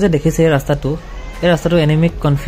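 Only speech: a person talking continuously.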